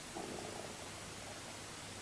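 A person's stomach rumbling: one faint, short gurgle lasting about half a second, shortly after the start.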